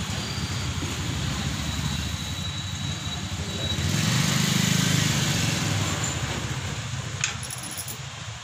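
Low rumble of a motor vehicle engine running, growing louder about four seconds in and then easing off, with a sharp click near the end.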